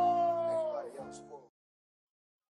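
The end of a hip-hop track: a long held vocal note, its pitch sliding slowly downward, over the backing music as it fades out. It is all gone by about three-quarters of the way through, leaving silence.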